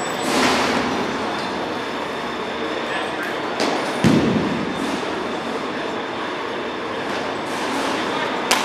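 Steady noisy din of an indoor batting cage, with a short knock a little past three and a half seconds and a dull thump just after four seconds.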